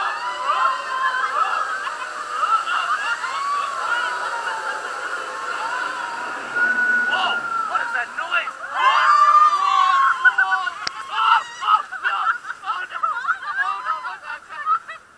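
Several raft riders shrieking, yelling and laughing on a river-rapids water ride, loudest with a burst of screams about nine seconds in.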